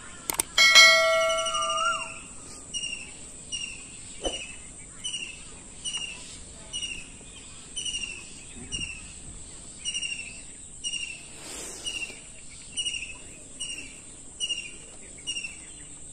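A couple of mouse-click sound effects and a notification-bell ding from a subscribe-button animation, the ding fading over about a second. Then a bird repeats a short falling chirp about every second.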